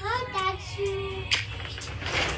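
A toddler singing a short wordless sing-song tune: gliding notes, then one held note.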